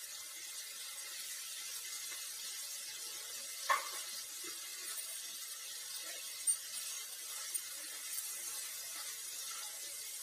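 Paneer and mushrooms frying in oil in a nonstick pan, a steady sizzle. A few sharp clicks cut through it, the loudest about four seconds in and again a little past six seconds.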